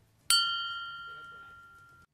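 A single bell-like chime sound effect struck once about a third of a second in, ringing with a few clear steady tones and fading slowly before it is cut off. It works as the transition cue that brings up the next quiz question.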